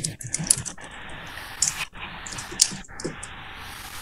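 Typing on a computer keyboard: a run of irregular, quick key clicks.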